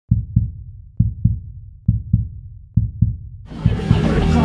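Deep heartbeat-like double thumps, four pairs a little under a second apart, as part of a channel intro jingle. About three and a half seconds in, loud full music cuts in.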